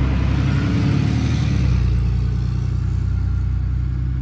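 Pickup truck engine with a loud, steady low rumble as it drives slowly past, swelling in the first two seconds.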